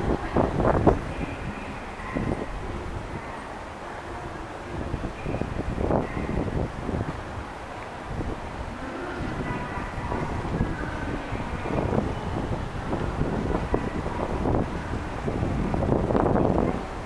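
Outdoor city ambience: a steady low rumble with wind on the microphone and a few louder stirrings.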